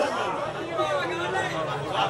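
Speech only: men's voices talking, with chatter from the people around.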